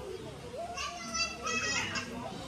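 High-pitched children's voices calling out in the background, starting about a second in, amid the chatter of a small crowd.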